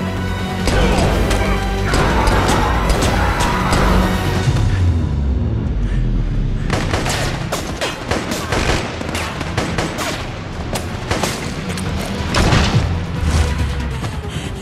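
Action-film gunfire over a loud orchestral score: dense rapid shots about halfway in, following a stretch of score and deep rumble.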